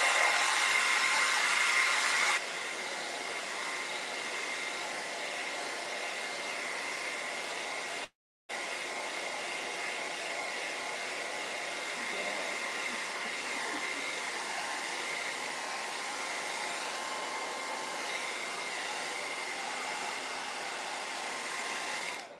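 Handheld hair dryer blowing steadily to dry freshly brushed acrylic paint, with a faint steady whine in its rush of air. It gets quieter about two seconds in and cuts out for a moment about eight seconds in.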